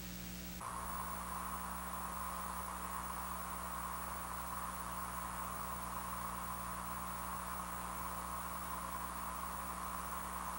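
Steady hiss and low electrical hum, the background noise of an old tape recording. About half a second in, the hiss shifts and grows slightly louder, then holds steady.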